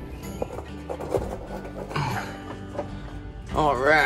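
Background music with sustained chords. Near the end, a person's voice gives a short call that wavers in pitch.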